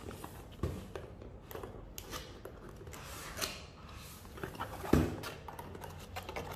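A paperboard box being handled and its end flap pried open by hand: scraping and rubbing of cardboard with scattered light clicks and a few knocks, the loudest about five seconds in.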